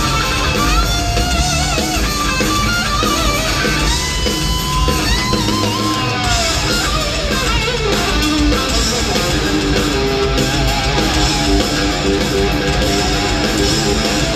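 Live rock band playing loudly in an arena, led by an electric guitar solo with bent and held notes over the full band, as picked up by a phone's microphone in the crowd.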